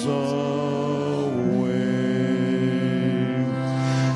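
A small group of voices, a woman, a girl and a man, singing a hymn together in long held notes over a steady low accompanying tone, with a change of note about halfway through.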